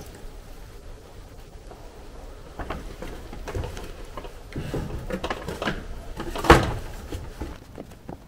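Knocks and scrapes of a cooling fan and fan clutch being handled and worked up into place in a pickup's engine bay, with one louder clunk about six and a half seconds in.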